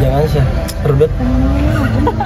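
People's voices in short bits of talk or vocal sounds, over a steady low background rumble.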